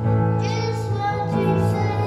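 A young boy singing into a microphone over instrumental accompaniment, holding each note steadily.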